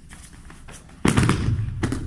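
Two judoka landing hard on the judo mat from a throw: a loud thud of bodies slamming down about a second in, followed by a smaller thump near the end.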